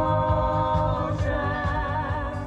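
Stage-show song with several singing voices over a beat: a long held note, then a new sung phrase about a second in.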